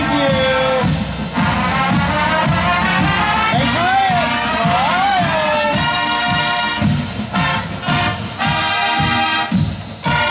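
Marching band of trumpets, trombones, saxophones, sousaphones and drums playing a tune on the march, horns up. About six seconds in, the full brass comes in with loud, punchy chords broken by short rhythmic gaps, over a steady drum beat.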